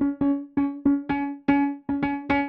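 Sampled Wurlitzer electric piano, sustain articulation, playing a single mid-range note struck repeatedly, about three to four times a second, each strike sharp and then fading. The 'stack' control is on, adding extra attack to each note.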